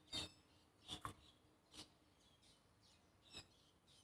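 A handful of faint, sharp clicks as the plastic release clips on ignition coil wiring connectors are pressed and the connectors pulled off, with pauses of near silence between them.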